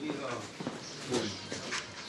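Indistinct voices of people talking in the street, quieter than a close voice, with a couple of short clicks or knocks.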